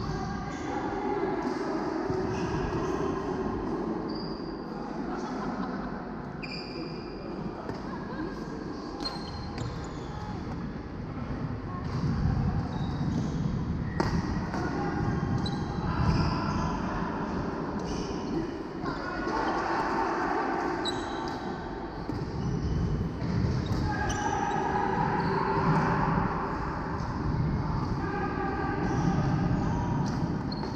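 Badminton play in a large sports hall: sharp racket strikes on the shuttlecock and players' shoes squeaking and stepping on the wooden court floor, with voices in the background.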